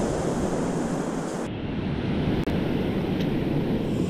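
Ocean surf breaking on a beach, a steady rush mixed with wind noise on the microphone.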